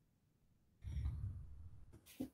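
A person sighing, a breathy exhale of about a second into a close microphone that starts just under a second in.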